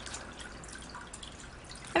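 Faint, irregular water drips over a steady low room noise.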